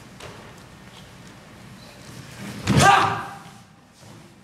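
A loud thump on the stage floor with a short vocal shout at the same moment, about three-quarters of the way in, as a performer throws the dice in a stage crap game.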